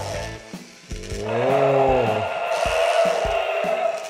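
Electronic toy T-rex playing its sound effect over steady background music: a single pitched roar that rises and falls, starting about a second in, followed by a few soft knocks.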